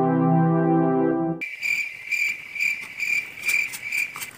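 Electronic keyboard music that cuts off about a second and a half in, giving way to insects chirping: a steady high-pitched trill pulsing about two or three times a second.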